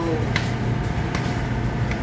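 Steady ship's machinery and ventilation hum with a low drone, and two faint clicks in the first half.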